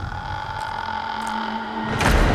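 Eerie horror-score drone: a low rumble with a few long held tones, slowly growing louder.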